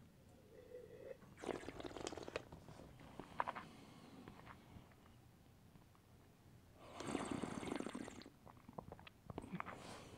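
Quiet mouth sounds of someone tasting red wine: an airy slurp of a sip about a second and a half in, small wet mouth clicks, and a longer airy breath about seven seconds in as the wine is worked in the mouth.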